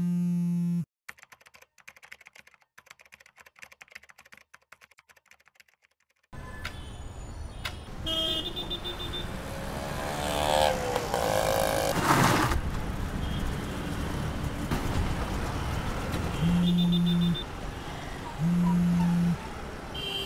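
A mobile phone buzzing briefly in the first second, then faint clicking. From about six seconds in, busy street traffic takes over: vehicles passing and horns honking, with the phone buzzing twice more in short pulses near the end.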